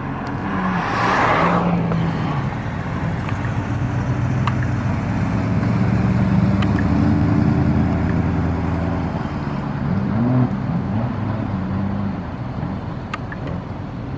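Holden HQ Monaro coupes driving past with engines running: a rush of passing noise about a second in, a steady engine drone through the middle, and the engine pitch rising as a car pulls away about ten seconds in.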